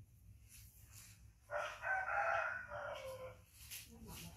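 A rooster crowing once, a single call of about two seconds that starts about a second and a half in and falls away at the end.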